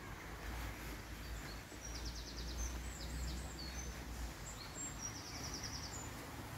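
Small birds chirping, with two quick trills of rapidly repeated high notes, over a steady outdoor hiss and a low rumble that stops about four seconds in.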